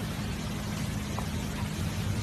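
Steady low hum with an even hiss over it, with no distinct event.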